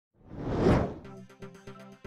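A swelling whoosh sound effect that rises and fades within the first second, followed by the start of a news intro music sting with quick percussive hits.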